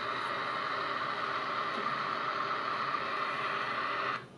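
Rocket-engine sound effect from a mobile rocket-launch game, a steady hissing rumble played through a smartphone's small speaker, cutting off suddenly at the very end as the game is closed.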